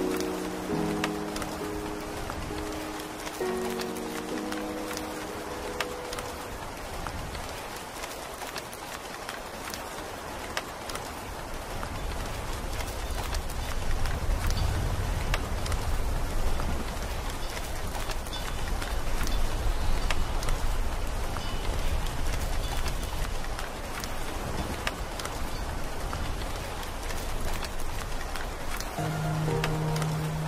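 Steady rain ambience between tracks of a lofi mix. A few soft keyboard chords fade out over the first several seconds, then the rain carries on alone, with a deep rumble swelling from about the middle, until the next track's low chords come in near the end.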